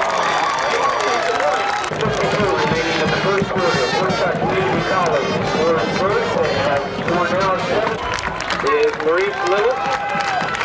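Football crowd in the stands, many voices shouting and calling at once with no single voice standing out.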